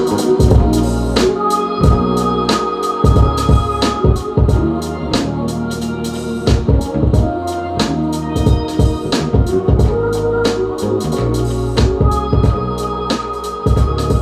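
Organ sound from the Omnisphere software synth, played live on a MIDI keyboard over a hip-hop beat with steady drums and bass, holding chords with a long high note held twice.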